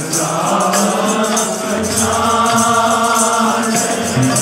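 Sikh kirtan: a group of voices chanting a slow, held melody over harmonium drones, with light tabla strokes underneath.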